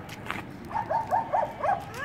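Dog yipping: a quick rising yelp, then a run of four short yips about a second in.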